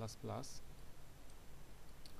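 Faint computer mouse clicks as text is selected in an editor, over a low steady hum. A short spoken syllable comes in the first half second.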